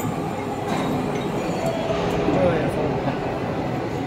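Steady mechanical noise of running workshop machinery, with a few light metallic clicks as steel rollers and spacers on a roll forming machine's shafts are handled.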